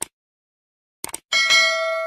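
Short click sound effects, a pair of them about a second in, followed by a bright notification-bell ding that rings on and slowly fades.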